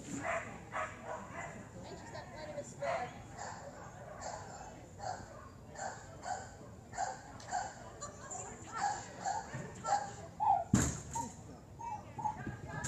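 Dog barking and a handler calling out short commands, repeating about twice a second, during an agility run. One loud thud comes near the end, the kind made by an agility obstacle knocked or banged by the dog.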